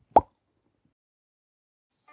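A single short cartoon-style 'plop' sound effect, one quick pop and then nothing.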